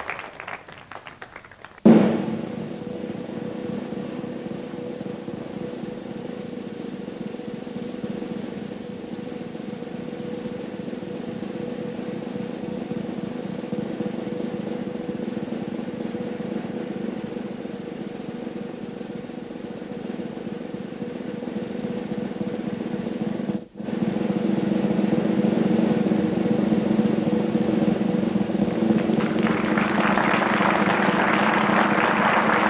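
Music with a continuous snare drum roll under held low notes, starting with a sharp hit about two seconds in. It breaks off for an instant near the end and comes back louder.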